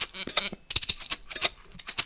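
Layered hand shakers playing a quick rhythmic pattern of sharp rattling strokes, several to the second.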